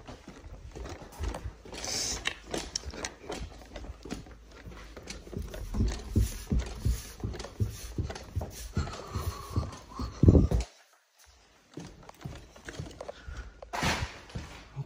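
Footsteps climbing a flight of stairs, a steady run of thuds about two a second, with rubbing from the handheld phone. A short steady tone sounds near 9 seconds, and a loud bump comes about ten seconds in, followed by a second of near-silence.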